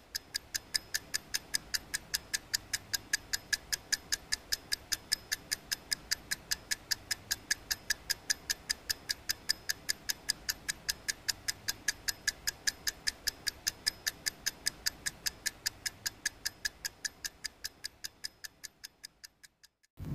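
A steady, regular ticking, about four ticks a second, fading in at the start and fading out near the end.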